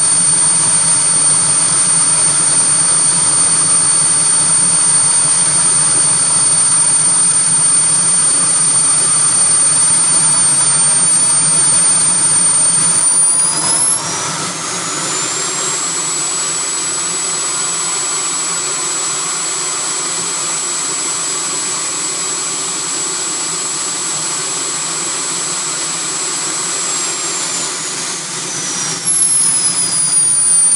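Model jet turbine running with a high whine over a steady rush of exhaust. About 13 seconds in it spools up to half speed with a rising whine and holds there, then winds back down toward idle near the end.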